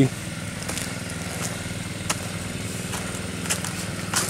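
Small gasoline engine of a water pump running at a steady speed, with a few faint clicks over it.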